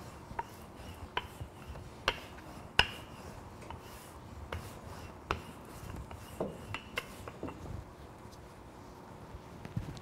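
Wooden rolling pin rolling out pizza dough on a floured granite countertop: faint rubbing with scattered light knocks, the sharpest about three seconds in.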